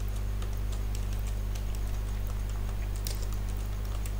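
Computer keyboard typing: a quick, irregular run of keystroke clicks over a steady low hum.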